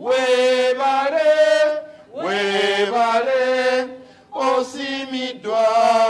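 Voices chanting a song in phrases of about two seconds, each held on a few steady notes, with short breaks between the phrases.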